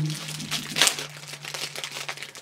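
Wrapper of a homemade lollipop crinkling as it is opened by hand, with a sharper rustle a little under a second in.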